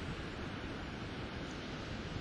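Ocean surf washing onto a sandy beach, a steady rushing noise, with wind rumbling on the microphone.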